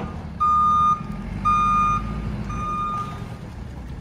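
JCB telescopic wheel loader's reversing alarm beeping as it backs up: three half-second beeps about a second apart, the last one fainter. The loader's diesel engine runs underneath.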